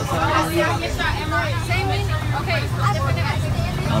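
School bus engine and road noise, a steady low drone as the bus drives along, under passengers' chatter.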